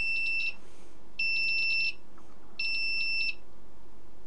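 Hurner HST-S-315 electrofusion welder's buzzer sounding three long, even beeps of the same pitch, about 1.4 s apart, as the machine is switched on.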